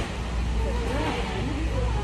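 Indistinct voices talking in the background over a steady low rumble.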